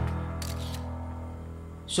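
Background music score of held low notes fading down, with a few camera shutter clicks about half a second in.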